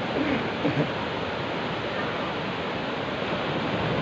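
Ocean surf washing steadily onto the beach, a continuous rushing hiss, with a faint voice murmuring briefly in the first second.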